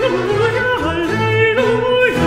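Countertenor singing a quick run of notes with vibrato over a baroque string orchestra; the voice drops out at the very end and the strings carry on.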